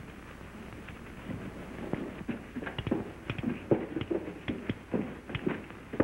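Footsteps on a hard floor: a run of quick, irregular knocks that starts about a second in and grows busier.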